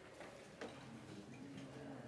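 Quiet room tone with a few faint, short clicks, the clearest a little past half a second in.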